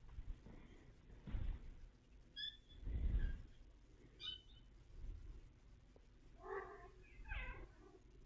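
A domestic cat meowing twice near the end, two short calls in quick succession, with a few brief high chirps earlier on. Low bumps about one and a half and three seconds in are louder than the calls.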